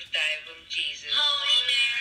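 A voice singing long held notes with a wavering vibrato, beginning about a second in.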